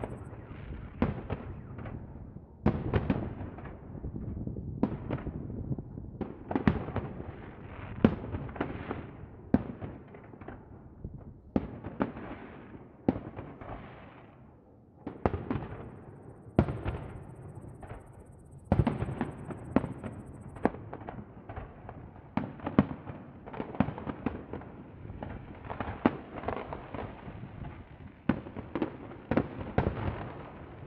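Aerial fireworks bursting overhead: a rapid series of sharp bangs, one or two a second, each trailing off in a rolling echo, with a brief lull about halfway.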